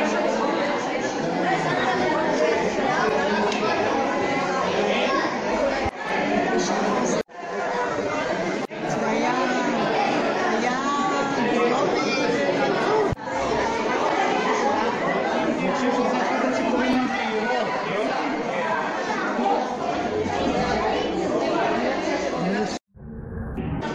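Several people talking at once, overlapping chatter in a large hall. The sound cuts out sharply for a moment about seven seconds in.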